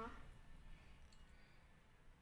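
Near silence: faint room tone, with a spoken word trailing off at the very start.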